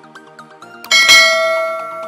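A notification-bell chime sound effect struck once about a second in, ringing and slowly fading, over quiet background music with a light ticking beat.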